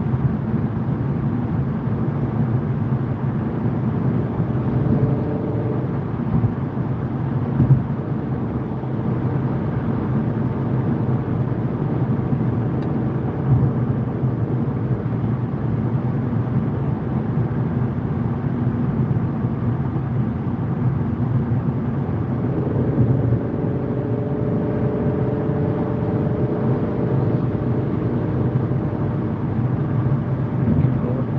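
Steady road and engine noise heard inside a car cruising at motorway speed, mostly low rumble. Faint tones rise in pitch about five seconds in and again from about twenty-two seconds.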